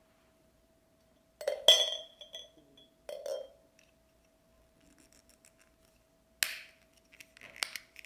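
Glass teacup and ceramic teapot clinking: a bright clink with a short ring about a second and a half in, then a duller knock. Near the end, a clear plastic wrapper crinkles.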